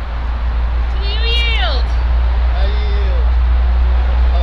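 Steady low rumble of wind on the microphone, with one brief high-pitched cry about a second in that rises and then falls steeply, and a few fainter short voice-like sounds after it.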